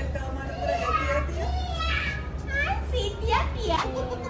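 High-pitched childlike voices chattering, with two quick rising squeals near the end, over a steady low hum.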